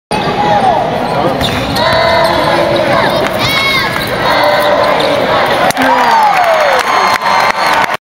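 Live college basketball game in an arena: the ball bouncing on the hardwood as it is dribbled, sneakers squeaking on the court, and players and the crowd calling out. The sound starts abruptly.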